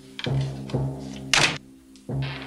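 Dramatic orchestral underscore with low sustained tones and timpani strokes. A wooden door slams shut loudly about one and a half seconds in.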